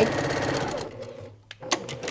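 Electric sewing machine stitching a seam at speed, slowing and stopping about a second in, followed by a single click.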